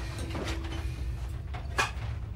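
Steady low rumble of submarine interior machinery, with one sharp click near the end.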